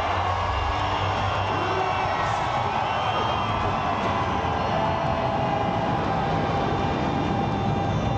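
Aircraft flypast over a stadium: a steady engine rumble with a drawn-out whine that drifts slowly lower in pitch as the plane passes.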